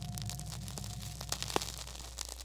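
Crackling static: a hiss with scattered sharp clicks over a low steady hum, and a faint thin tone that stops about a second in.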